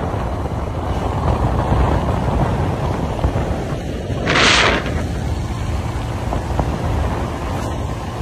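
Motorcycle riding along an open road: wind rushing over the microphone with the engine running underneath, steady throughout. A brief hiss rises and falls about halfway through.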